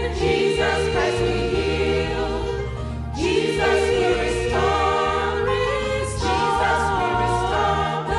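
Church choir singing a gospel song into microphones, in phrases of about three seconds with short breaks between them, over a low accompaniment.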